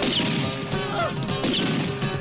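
Two sharp gunshots, one at the start and one about a second and a half later, over a rock music score.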